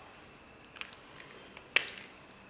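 Whiteboard marker being handled, its cap clicking: a few small clicks, then one sharp click near the end as the cap comes off.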